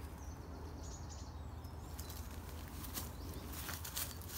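Faint rustling of leaves and twigs as a child crawls through woodland undergrowth, over a low wind rumble on the microphone. A faint high bird call sounds in the first second or so.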